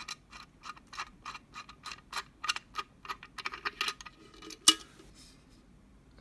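Small metal screw cap of a stainless steel hip flask being turned and worked with the fingertips: a quick run of light metallic clicks, about five a second. Then a single much louder click a little before the end as the hinged lid comes free.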